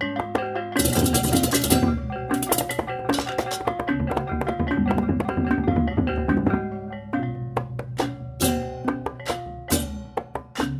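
Balinese baleganjur gamelan playing: interlocking bronze pot gongs and gongs over drums, with loud bursts of clashing cengceng cymbals about a second in, around two and a half seconds, and again near the end.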